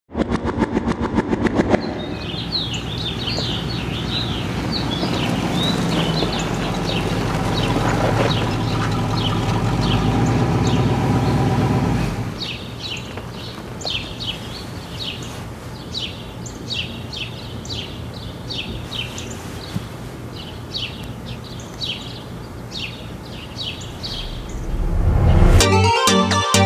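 A short rapid clicking sting at the start, then a low steady drone with birds chirping over it; the drone drops away about 12 seconds in, leaving the birdsong. An electronic dance beat comes in loudly near the end.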